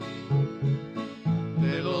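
Colombian pasillo on acoustic guitar: plucked bass notes and chords fill a short gap between sung lines. The duo's voices come back in near the end.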